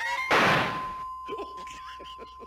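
Cartoon sound effects: a loud noisy thunk about a third of a second in that dies away over about half a second, followed by a single steady high tone held under short voice sounds.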